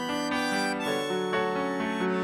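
Accordion playing held chords together with a keyboard in the slow instrumental introduction of a song, the notes changing every second or so.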